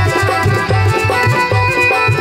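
Live band music for a Chhattisgarhi folk song: a keyboard melody over a steady, driving hand-drum beat.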